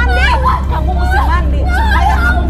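Two women crying out in a physical struggle: a young woman wailing and sobbing while an older woman shouts at her, high wavering cries without clear words. A steady low hum runs underneath.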